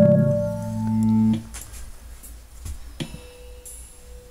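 Electronic keyboard played: a held chord of several low and middle notes that is released about a second and a half in, then a single quiet note held on its own.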